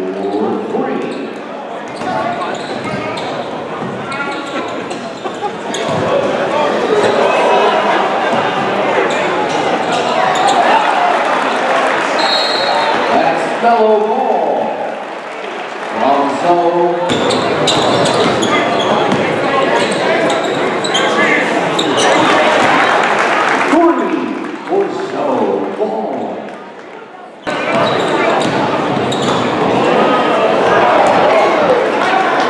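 Live basketball game sound in a large gym: the ball bouncing on the hardwood court amid the voices of players and spectators, with the sound changing abruptly at several cuts.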